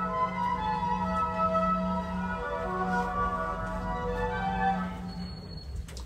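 Classical music playing over a lift's speaker, slow sustained notes over a steady low hum, dropping away in the last second or so.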